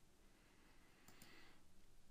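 Near silence, with two faint clicks close together a little over a second in.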